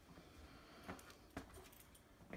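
Near silence: quiet room tone with two faint taps, one just before and one just after the middle.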